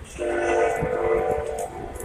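A horn sounds one long blast of several steady tones held together, starting just after the start, then fading and lingering more faintly near the end.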